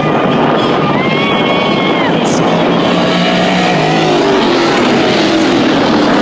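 Several dirt-track Sportsman race cars running at full throttle in a pack, a loud, dense engine noise throughout. The engine pitch rises and falls as the drivers get on and off the throttle through the turns.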